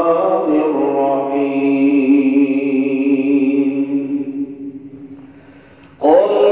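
A man's voice chanting Arabic recitation at the opening of a Friday sermon, over a microphone, holding one long note that fades away about five seconds in; a new phrase starts right at the end.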